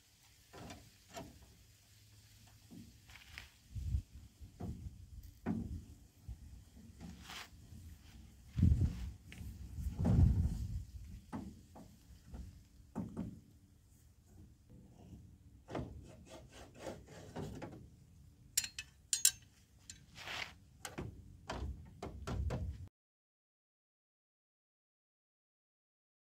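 Intermittent knocks, rubs and clunks of a spare-tire lowering rod being handled and turned in the rear bumper of a Chevy Silverado, working the under-bed spare-tire winch. The loudest clunks come about nine to eleven seconds in.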